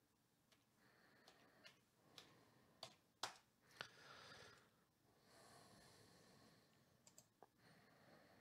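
Near silence with a few faint, scattered clicks from a computer mouse being clicked and scrolled.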